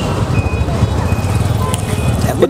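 A motor vehicle passing on the road close by: a loud, low engine rumble with road noise, and a few short, faint high beeps over it.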